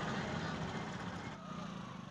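Faint background noise with indistinct voices, growing quieter toward the end.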